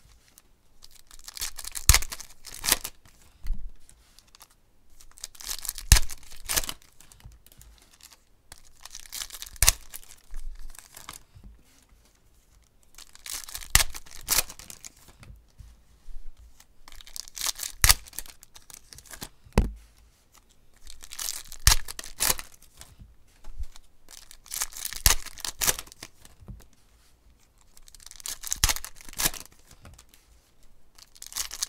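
Foil packs of 2016 Panini Contenders football cards being torn open one after another, with the cards handled and set down on the table: crinkly bursts of tearing and rustling about every four seconds, each with sharp clicks, and short quiet gaps between.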